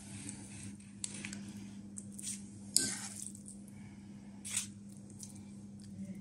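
A metal spoon scooping soft ricotta and eggplant filling and dropping it onto puff pastry, with a few soft wet squishes and a sharp click of the spoon a little under three seconds in. A faint steady hum runs underneath.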